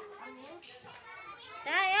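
Children's voices and chatter, softer at first, with one child's loud, high-pitched call near the end.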